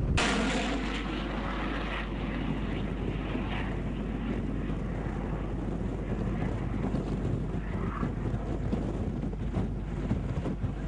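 Anti-aircraft missile in flight: a rushing roar that comes in suddenly and fades over about two seconds into a steady rumble.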